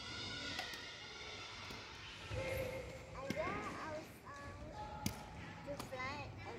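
Faint voices of people talking in the background, with a few short, sharp knocks scattered through.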